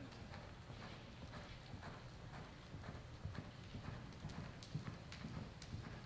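Hoofbeats of a horse loping on soft arena dirt, a steady rhythm of muffled thuds about two to three a second.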